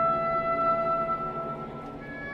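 Symphony orchestra playing a slow contemporary classical passage of sustained notes: one clear held note swells to its loudest about a second in and fades away near the end, over lower notes that hold throughout.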